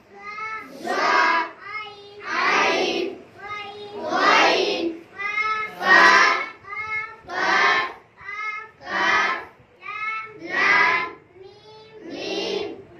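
A class of children chanting the letters of the Arabic alphabet in call and response: a single child's voice calls each letter and the group answers louder in unison, about eight exchanges at a steady pace of one every second and a half.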